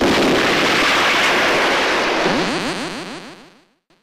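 Explosion sound effect from a tokusatsu hero show: a loud, sustained blast that holds for about two seconds, then fades out with a run of quick rising sweeps and dies away just before the end.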